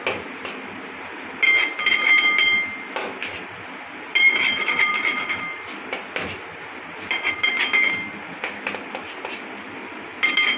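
Metal palette knife scraping whipped cream off a steel plate and against the metal cake turntable, a ringing metallic scrape in stretches of about a second, three times, with a few sharp clinks between.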